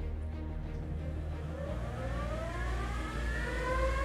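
Dual-motor electric skateboard at full throttle on a chassis dyno, its motors whining as they spin up the drum. The whine starts about a second and a half in and rises steadily in pitch.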